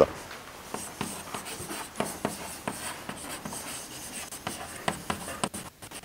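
Chalk writing on a chalkboard: a run of short, irregular scratches and taps as a word is chalked out.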